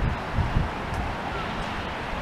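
Wind buffeting the handheld camera's microphone: an uneven low rumble over a steady outdoor hiss.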